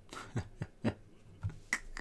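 A series of about six short, sharp clicks at uneven intervals.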